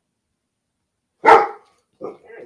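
A dog barks once, loudly, a little over a second in.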